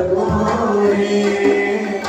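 Group singing of a devotional song in long held notes, accompanied by tabla, with a couple of low drum strokes near the start.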